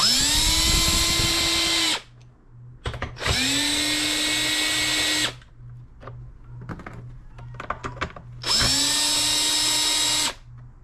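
Cordless drill/driver with a 10 mm socket spinning off the three nuts that hold a mower engine's recoil starter cover: three runs of about two seconds each, the motor whine rising to speed at each start and then holding steady, with small clicks between the runs.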